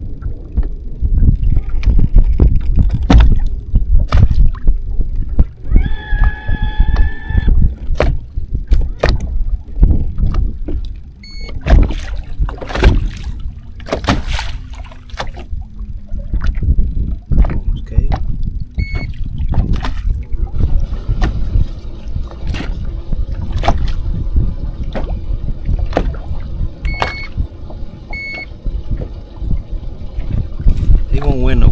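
Wind buffeting the microphone and water slapping against a bass boat's hull, with many small knocks. Short electronic beeps from a handheld digital fish scale sound four times, two of them close together near the end, as a fish is weighed.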